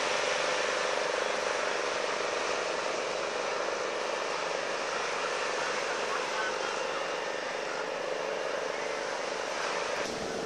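Surf breaking on a sandy beach, with the chatter of people on the shore and a steady hum.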